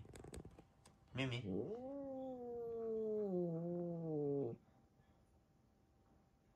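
A cat giving one long, low yowl lasting about three seconds. It starts about a second in and slides slowly down in pitch before cutting off. This drawn-out call is the kind a cat uses as a hostile warning, and one of the household cats had just been described as bad-tempered toward the other.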